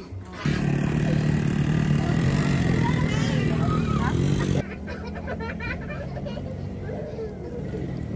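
People talking over a steady low engine-like hum, which cuts off abruptly about four and a half seconds in; quieter talk follows.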